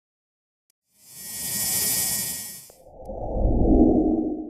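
Two whoosh sound effects for an animated title. About a second in, a hissy swoosh swells and fades. It is followed by a deeper, louder rushing whoosh that builds toward the end.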